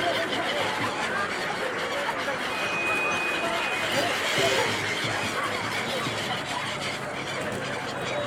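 A large flock of gulls calling over the river, many short overlapping calls, mixed with the chatter of a crowd of people.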